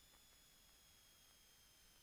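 Near silence: only a faint steady hiss, with no engine noise coming through.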